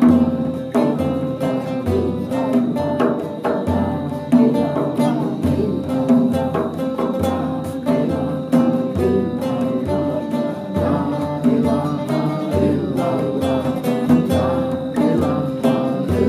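Acoustic guitars and a large hand-held frame drum playing together, the drum keeping a slow, steady beat under the strummed chords.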